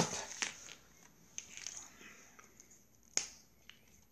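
A few sharp clicks over faint rustling. The loudest click comes right at the start and another sharp one just past three seconds in.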